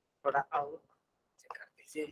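Quiet, low-voiced speech near the microphone: a couple of short murmured words, then a few fainter fragments near the end.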